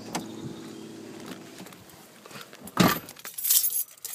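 A car door being shut with a single loud thump about three quarters of the way in, followed by keys jangling as the driver settles into the seat.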